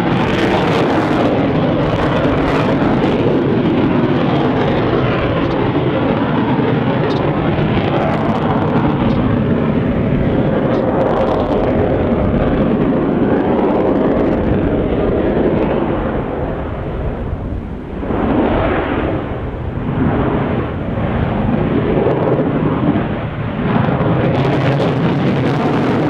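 Jet noise from a Su-30MKM fighter's twin AL-31FP afterburning turbofans, heard from the ground as the aircraft manoeuvres overhead. The noise is loud and steady, then eases and wavers from about three-quarters of the way through, with a brief dip.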